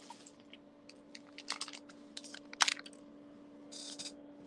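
Scattered light clicks and taps of small plastic craft beads and their packaging being handled, the sharpest click about two and a half seconds in. A faint steady hum runs underneath, and there is a brief rustle near the end.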